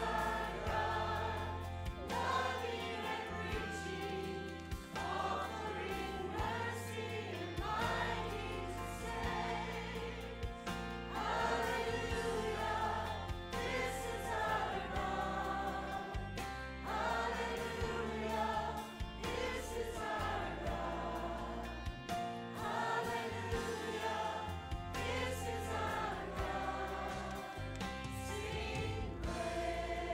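A mixed church choir of men and women singing together, with an instrumental accompaniment holding sustained bass notes that change every second or two.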